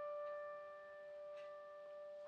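A held piano chord ringing softly and slowly fading away, several steady notes sounding together.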